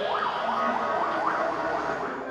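Fire engine siren sounding a fast rising-and-falling yelp, about three sweeps a second, fading near the end.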